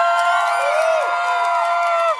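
A group of children cheering together with long, high-pitched held shouts, several voices at different pitches at once, breaking off right at the end.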